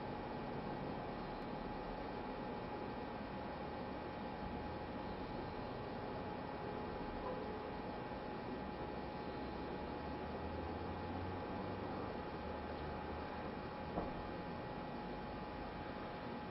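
Steady low hiss of recording noise with a faint constant hum tone; no breaths or other events stand out, only one small click near the end.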